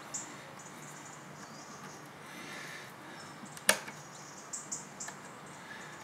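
Faint rubbing and scratching of a hand cleaning fresh spray paint off the tops of model railway rails, with one sharp click about three and a half seconds in.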